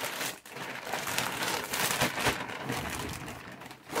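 Plastic poly mailer bag crinkling and rustling as it is handled, in irregular crackles.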